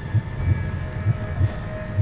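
A suspense music bed of low, heartbeat-like drum thuds, about three a second, with a faint held tone coming in during the second half.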